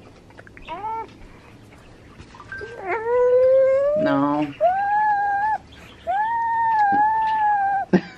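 A six-month-old baby crying in protest at her food: a short whimper about a second in, then three long wails, the first rising in pitch.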